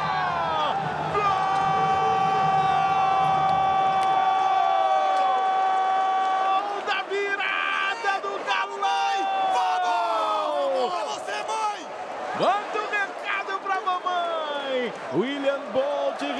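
A Brazilian TV commentator's goal call: one long held "gooool" on a steady note for about five seconds, then excited shouting with falling pitch, with crowd noise from the arena underneath.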